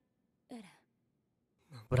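Mostly quiet, broken by one short voice sound about half a second in whose pitch falls, like a sigh or a brief word. A man begins speaking right at the end.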